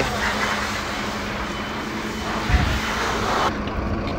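A vehicle engine running steadily under a noisy rumble, with a single low thump about two and a half seconds in.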